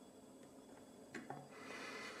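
Faint handling sounds of a lock in a small bench vise: two light clicks a little over a second in, then soft rubbing.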